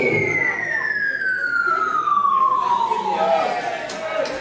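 A long whistle-like falling-tone sound effect, gliding steadily down in pitch and fading out near the end, over crowd voices.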